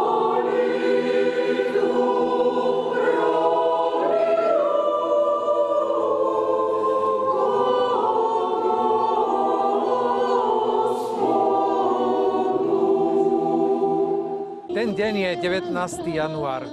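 Mixed choir of women's and men's voices singing in held, slowly changing chords. It cuts off abruptly near the end and a man's speaking voice takes over.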